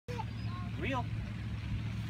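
A steady low hum like a running motor or engine, with a few brief rising and falling vocal exclamations in the first second.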